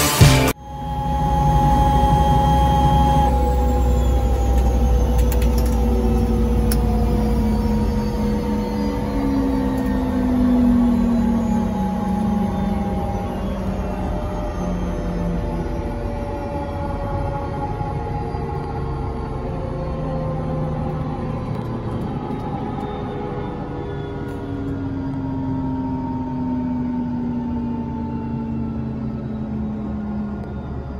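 Robinson R66's Rolls-Royce RR300 turbine engine and rotor winding down after shutdown on the ground. Several whining tones fall slowly in pitch and the overall sound gradually fades.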